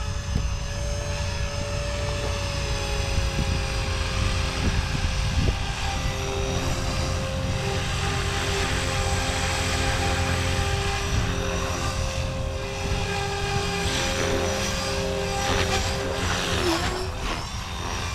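Blade Fusion 360 3S electric RC helicopter in flight, its rotors and motor giving a steady whine that slowly sinks in pitch as the flight battery runs down.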